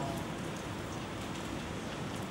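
Steady, even hiss of background noise in a large lecture hall, with no speech or distinct events.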